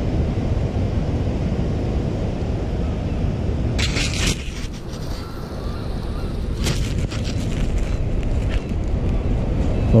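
Wind buffeting the microphone, a steady low rumble. It is broken by a few short scraping, rattling noises, the loudest about four seconds in and fainter ones around seven and eight seconds.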